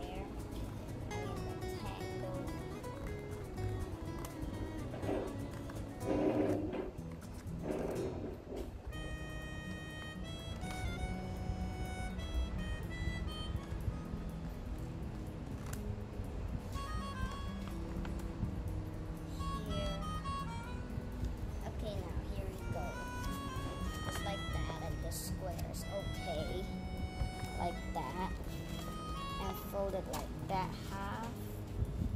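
Background music: a melody of short stepped notes over a steady low accompaniment, with a voice heard now and then.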